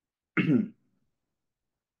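A man clearing his throat once, briefly, about half a second in.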